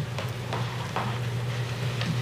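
Steady low electrical hum with faint hiss from the courtroom microphone feed, heard in a pause between speech.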